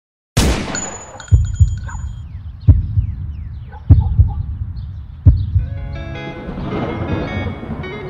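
Sound-design intro: a single sharp gunshot, then heavy low double thumps like a slow heartbeat, roughly every 1.3 s, with a thin high ringing tone over the first couple of seconds. Sustained musical tones fade in over the last couple of seconds.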